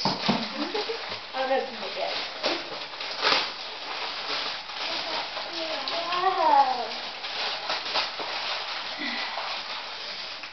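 Wrapping paper rustling and tearing as a present is unwrapped, with indistinct voices in the room. About six seconds in, a drawn-out call rises and falls in pitch.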